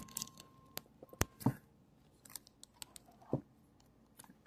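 Quiet room tone broken by a handful of short, sharp clicks and taps, the loudest about a second in and again near the end.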